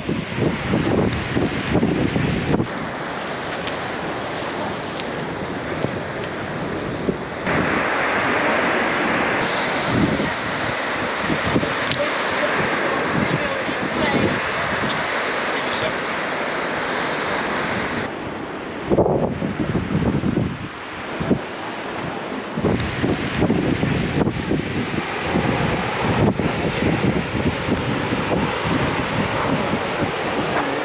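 Wind buffeting the microphone over the sound of ocean surf breaking on rocks below, with a steadier stretch of wind in the middle and indistinct voices at times.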